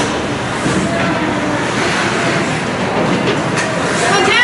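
Steady din of an indoor ice rink during a hockey game: skates on the ice and the hum of the arena, with faint voices under it and no single sharp event.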